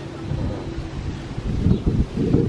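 Wind buffeting the camera microphone, a low rumbling noise that gusts stronger near the end.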